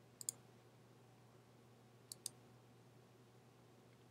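Two pairs of quick computer mouse clicks about two seconds apart, over near silence.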